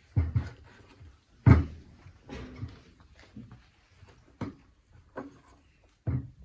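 A cloth wrapping being pulled open and rustled on a tabletop, with several dull thumps of handling against the table. The loudest thump comes about a second and a half in; smaller ones follow near the end.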